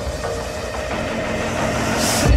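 Electronic breakbeat music in a breakdown: the deep bass drops away, leaving a dense, grainy synth texture with steady sustained tones. A bright burst of hiss swells at the very end.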